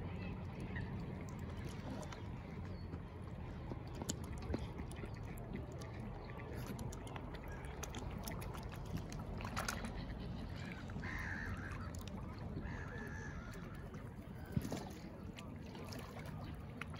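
Waterfowl on a loch: a few short calls against a steady low outdoor rumble, with light splashing as swans dip their heads to feed, and one sharp knock near the end.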